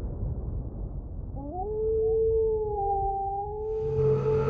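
A wolf howl, as a sound effect: one long call that glides up about a second in and then holds a steady pitch, over a low rumble.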